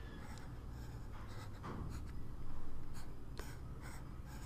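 Pen stylus scratching across a drawing tablet in short, faint strokes as star shapes are drawn, over a low steady hum.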